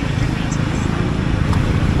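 Jawa 42 motorcycle's single-cylinder engine running under way, a steady low exhaust note.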